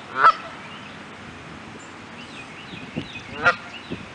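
Canada goose honking twice: one short honk right at the start and another about three and a half seconds in, with faint high chirps between.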